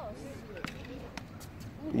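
Tennis ball struck by a racket and bouncing on a hard court during a children's rally: a few short, sharp knocks.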